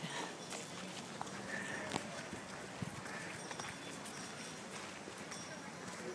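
Footsteps of a person walking outdoors, a few soft irregular knocks, over a steady rush of wind on the microphone.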